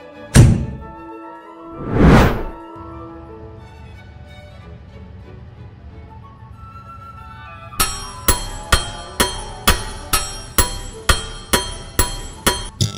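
Cartoon sound effects over soft background music: a sharp thud, then a whoosh that swells and fades. From about two-thirds of the way through, a steady run of sharp ringing clicks, about two a second.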